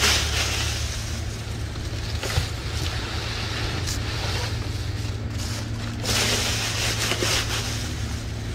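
Dry fallen leaves rustling and crackling as they are scooped with plastic leaf-grabber hand rakes and pressed down into a plastic-bag-lined trash can, louder for a couple of seconds at the start and again near the end. A steady low hum runs underneath.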